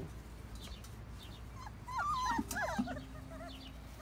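Bullmastiff puppies whimpering: several short, high squeaks that rise and fall, starting about a second and a half in.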